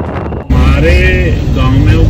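Steady low rumble of a Toyota cab's engine and tyres, heard from inside the moving car. It cuts in suddenly and loudly about half a second in, and a voice speaks briefly over it.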